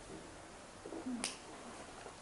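Low room tone with a faint murmured voice and a single short, sharp click a little over a second in.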